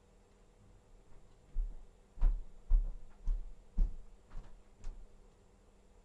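A run of about seven soft, low thumps, each with a light click, roughly two a second, starting about a second and a half in.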